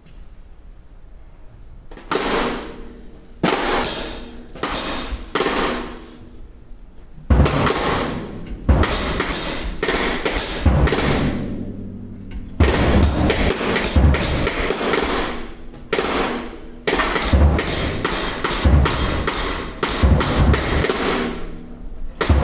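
Drum kit played freely with sticks. A few separate cymbal strikes ring out and fade in the first seconds, then from about seven seconds in comes a busier passage of cymbal washes and heavy low drum hits.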